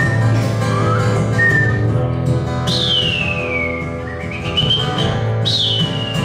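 Acoustic guitar playing under high whistled notes: a few short held notes first, then two long whistles that slide downward in pitch, one about three seconds in and one near the end.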